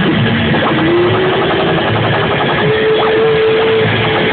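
Loud rock band music with electric guitar holding long sustained notes that slide upward in pitch, over a dense wash of the rest of the band.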